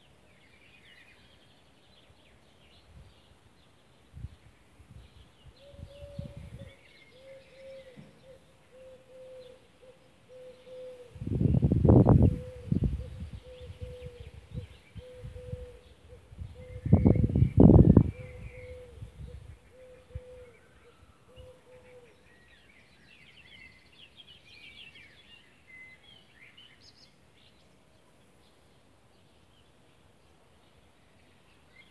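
Small birds chirping, with a thin note repeating about once a second through the middle stretch. Two loud low rumbles come about twelve and eighteen seconds in.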